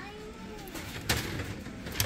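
Two sharp plastic clicks about a second apart as a gashapon capsule is handled, with faint voices in the background.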